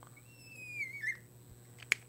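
Marker squeaking on a glass lightboard as a line is drawn: one high squeak lasting about a second, falling slightly in pitch. A short sharp click comes near the end.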